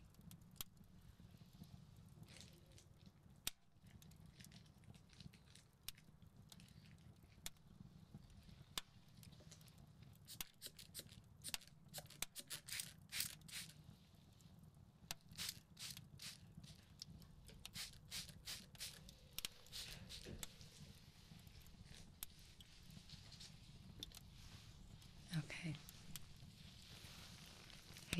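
Faint crinkling and tearing clicks of medical supplies and their packaging being handled in preparation for stitching, coming in irregular clusters over a low, steady background hum.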